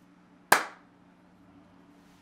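A single sharp hand clap with a short ringing tail from the room, over a faint steady hum.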